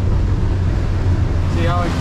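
Outboard motor running steadily at planing speed, a low drone, with water rushing along the hull, heard from inside the boat's cabin.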